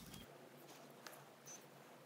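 Near silence: faint room tone with a few very faint short ticks.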